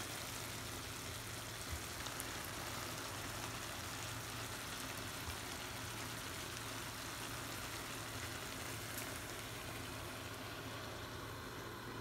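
A prawn, potato and aubergine curry simmering in an uncovered frying pan, giving a steady sizzling, bubbling hiss.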